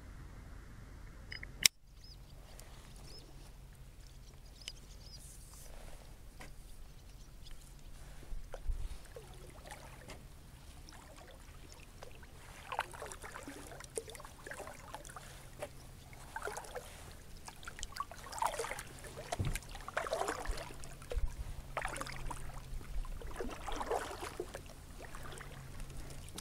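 Water sloshing and gurgling in short, irregular splashes that grow busier in the second half, with a single sharp click just under two seconds in.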